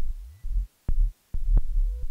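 Electronic music from a Korg Volca Bass synthesizer: deep, throbbing bass notes that stop and start, with sharp clicks in between and two brief dead gaps near the middle.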